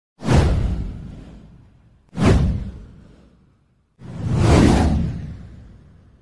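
Three whoosh sound effects of an animated intro, about two seconds apart, each starting suddenly and fading away; the third swells in more gradually.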